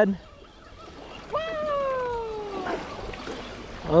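Small waves washing up on a sandy beach. About a second in, a single long call slides steadily down in pitch for about a second and a half.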